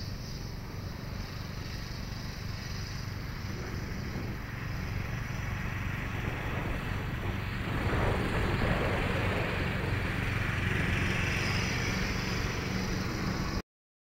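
Wind rumble on the microphone under the distant buzz of an FMS Trojan 1.4 m electric RC plane's motor and propeller, which grows louder about eight seconds in as the plane comes closer. The sound cuts off suddenly just before the end.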